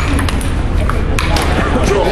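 Celluloid-style table tennis ball being struck by paddles and bouncing on the table during a rally: a run of sharp clicks, several close together in the second half.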